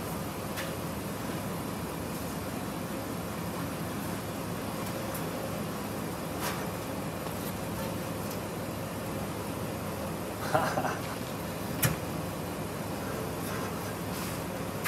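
Wheel dolly casters rolling a car across a concrete floor: a steady low rumble, with a couple of sharp clicks about halfway and near the end and a brief louder scrape or grunt shortly before the last click.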